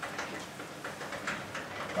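Chalkboard eraser rubbing across a blackboard in a series of short wiping strokes, a few per second.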